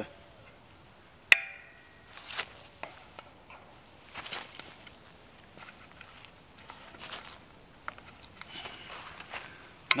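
Vise grips clamping onto taut 9-gauge steel trellis wire with one sharp metallic snap and a brief ringing about a second in, followed by faint clicks and rustles of hands working the tool and wire.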